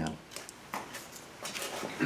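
A few faint clicks and light knocks of GM HEI distributor parts being handled.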